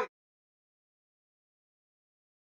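Dead digital silence: a man's voice is cut off abruptly at the very start and nothing follows.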